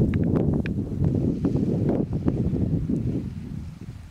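Wind buffeting the microphone, a dense low rumble that eases off a little near the end, with a few faint short high sounds in the first half.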